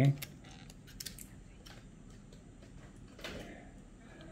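Mostly quiet room tone with a few faint, light clicks and taps from small objects being handled, after a short spoken "okay" at the start.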